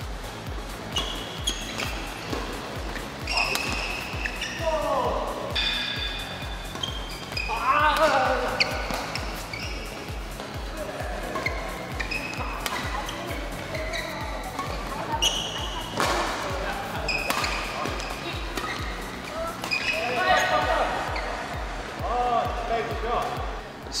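Badminton rally sounds, with rackets striking the shuttlecock and shoes squeaking on the court mat, over background music with a steady beat.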